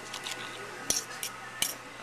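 A metal fork clinking against a ceramic plate while cutting into enchiladas: two sharp clinks, about a second in and again near the end, with a few lighter taps between.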